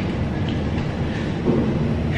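Lift car travelling upward, heard from inside the cabin: a steady low rumble with no break.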